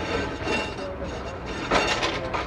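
Sydney freight tram 24s rolling over curved track and pointwork: its steel wheels squeal with thin, steady high tones, with a loud clank from the rails about three-quarters of the way through.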